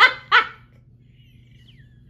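A woman laughing: the last two short bursts of a laugh come in the first half second.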